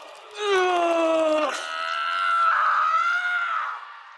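A man's loud, drawn-out scream in two cries: the first falls in pitch, and the second wavers before it fades near the end.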